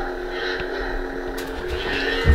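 Lightsaber hum, a steady electric drone with a held tone that stops near the end.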